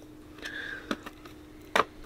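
Fiat 500 plastic interior trim pieces being handled, giving a soft rub and two light clicks, one just under a second in and one near the end, over a faint steady hum.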